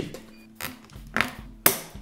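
Soft background music with a few short clicks from plastic zip ties being handled and fastened around an LED strip; the loudest click comes near the end.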